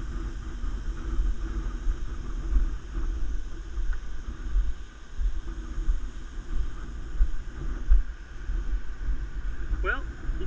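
Wind and movement rumbling on a head-mounted action camera's microphone during a walk along a wooden boardwalk, with faint voices in the background. A man's voice starts right at the end.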